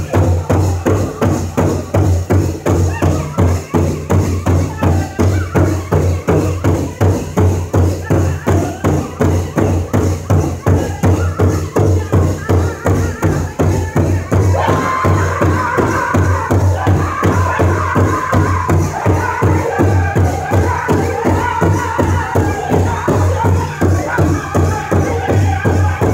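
Powwow drum group beating a large shared drum in unison with drumsticks, a steady beat of about two strikes a second, while the men sing; high-pitched singing joins about halfway through.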